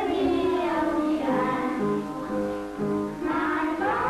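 Film soundtrack music with a choir singing. Around the middle comes a run of short, separate held notes.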